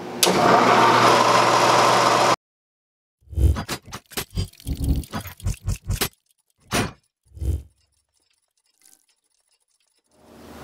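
A belt-driven milling machine's electric motor starts up with a loud, harsh, steady noise over a low hum, cut off abruptly after about two seconds. About a second later comes a run of short metallic clanks and clicks, like meshing gears, that ends about eight seconds in, followed by faint high ticking.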